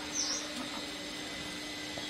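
A small bird gives one short, high chirp about a quarter of a second in, over a steady low background hum.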